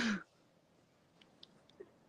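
A man's short, breathy exhale that falls in pitch as a laugh dies away, then near quiet with a few faint clicks.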